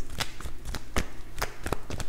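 Tarot cards being shuffled by hand, an uneven run of crisp card clicks and snaps.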